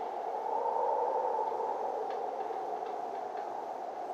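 A steady, muffled drone that swells slightly about a second in, with a few faint ticks in the middle.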